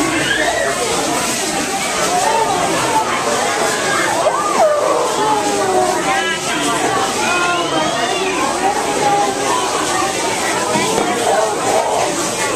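Several people's voices talking over one another, with no clear words, among a crowd.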